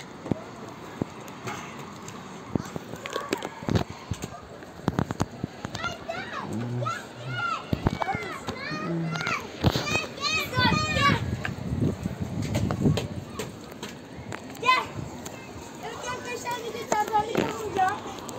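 Children's high-pitched voices calling and shrieking in play, with scattered knocks and footsteps on a playground climbing frame.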